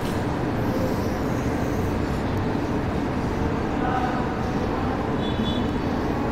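Steady background noise, with faint short higher tones about four and five seconds in.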